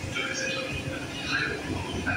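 Paris Métro line 10 MF67 train running through the station alongside the platform: a steady low rumble of wheels on rail with short, irregular high-pitched squeals on top.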